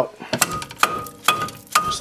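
Dead blow hammer striking the back of a car's front brake rotor to knock it off the hub: four evenly spaced blows, about two a second, each followed by a brief metallic ring from the rotor.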